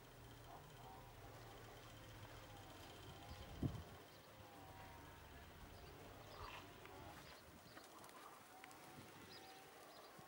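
Near-quiet outdoor air with faint domestic pigeon cooing that comes and goes, and one low thump about three and a half seconds in.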